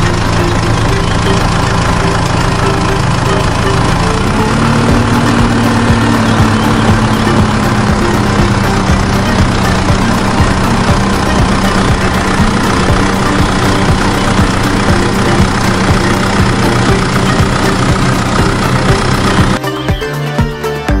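A toy tractor running with a steady, engine-like hum that rises in pitch about four seconds in, then settles a little lower and holds.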